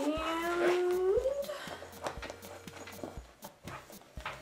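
A woman's voice drawing out a long 'aaand' for about a second and a half, its pitch creeping up and then sliding higher at the end. Short clicks and rustling of her hands rummaging through a handbag follow.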